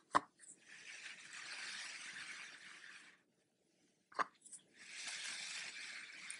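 Faint rustling of yarn and cord as the crochet work is handled: two stretches of soft hiss-like rubbing, each begun by a small click.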